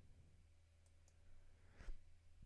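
Near silence over a low steady hum, broken by a faint click nearly a second in and a slightly louder one near the end: mouse clicks.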